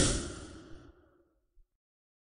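A whoosh transition sound effect, a rushing noise that fades away within the first second, followed by silence.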